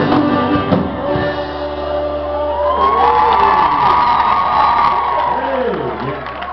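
Live band with amplified guitars and drums playing over a steady low amplifier hum, with long sliding pitches that rise and fall through the second half, while the audience cheers and whoops.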